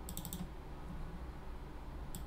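A quick run of four or five computer keyboard keystrokes in the first half-second, then faint room tone.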